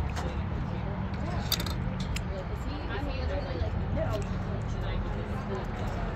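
Indistinct background voices of people talking, with a few light clicks and clinks, over a steady low rumble.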